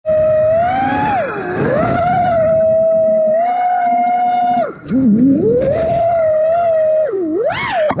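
FPV quadcopter's brushless motors whining, holding a steady pitch then swooping down and back up as the throttle changes. About four and a half seconds in the throttle is chopped and the whine drops away before climbing back, and near the end it swoops low and high again.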